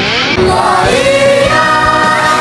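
Female pop vocals, layered like a choir, holding long sung notes over a synth backing. A rising glide leads into the first held note near the start.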